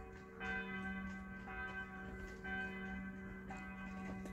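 Church bell tolling, struck about once a second, its tones ringing on between strokes.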